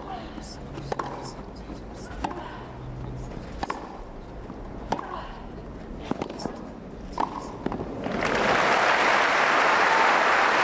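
Tennis rally on a grass court: about six racket strikes on the ball, a little over a second apart. Crowd applause breaks out about eight seconds in as the point is won.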